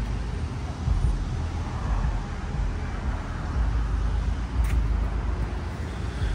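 Dodge Charger widebody's V8 engine idling, a low uneven rumble, with one brief click a little before the end.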